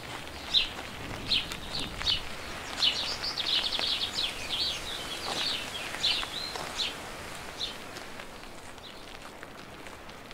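Small birds chirping over a faint outdoor hiss: short, high chirps about every half second, a denser twittering in the middle, thinning out near the end.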